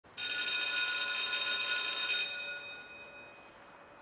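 A bell rings steadily for about two seconds, then its ring dies away over the next second and a half.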